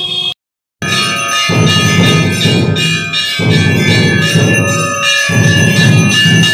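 Temple bells ringing on and on during Kali Puja worship, with a low rhythmic beat underneath that comes and goes in stretches of about two seconds. The sound starts just after a short dead gap near the beginning.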